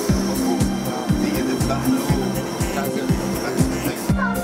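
Background electronic dance music with a steady kick drum at about two beats a second over a held bass line.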